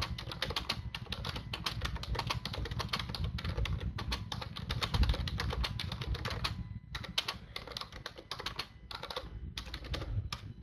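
Typing on a computer keyboard: a fast, dense run of key clicks that thins out to scattered clicks about six and a half seconds in, over a low steady hum.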